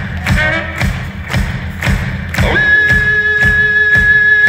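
Live rock band playing: drums beating steadily about twice a second while a trumpet plays a short phrase, then slides up about two and a half seconds in to a long held high note.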